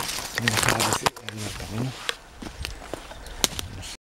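A man's voice in a few short, wordless utterances, then scattered crackles and snaps of footsteps pushing through dry bracken, dead leaves and twigs.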